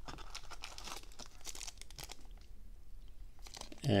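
Crinkling and rustling of a small clear plastic bag being handled, in a run of irregular light crackles.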